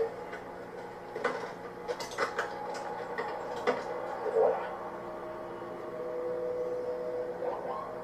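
Faint soundtrack of a TV episode playing in the room: a steady low hum with held tones, scattered soft clicks and knocks, and a brief voice-like sound about four and a half seconds in.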